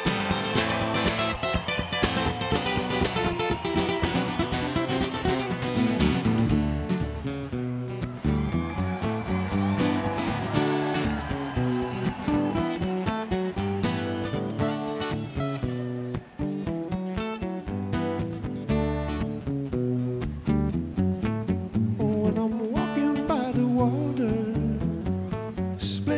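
Two acoustic guitars playing an instrumental passage: fast picked lead lines over a strummed rhythm part, with a brief drop-out about two-thirds of the way through.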